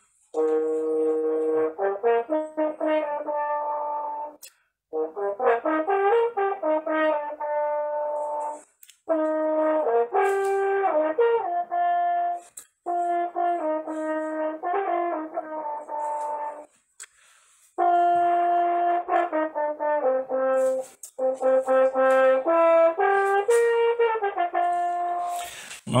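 French horn playing a melodic solo passage of held and moving notes in phrases a few seconds long, with short breaks for breath between them, heard over a video call.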